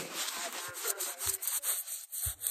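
Phone microphone rubbing against fabric while the lens is covered: scratchy rustling handling noise with a few small clicks.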